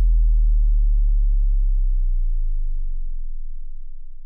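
A deep synth bass note ringing out at the close of an electronic music track, its pitch sliding slowly downward as it fades.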